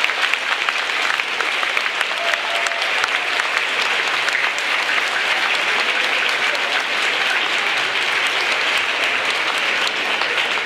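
Large crowd applauding steadily, many hands clapping at once in a dense, unbroken round of applause.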